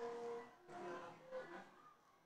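Faint voices of a small crowd of onlookers talking and calling out, with one drawn-out voiced sound at the start.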